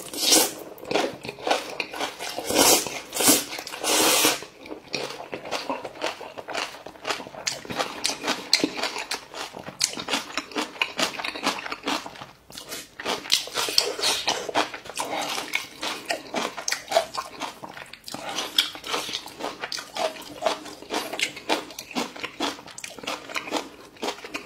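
A person slurping noodles up from a bowl in a few loud pulls during the first four seconds or so, then chewing a mouthful steadily for the rest of the time, with many small quick clicks. Close-miked eating sounds.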